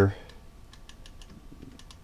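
A quick run of light clicks from computer input, about a second long, starting a little over half a second in.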